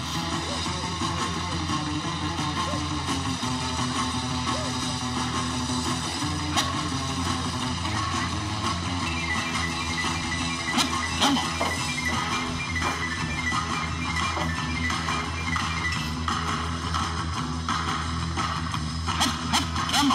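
Background music with guitar playing steadily, with a few short sharp knocks mixed in.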